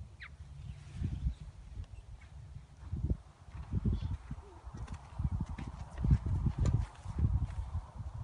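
Wind buffeting a phone's microphone in uneven gusts, heard as irregular low rumbling thumps that come and go.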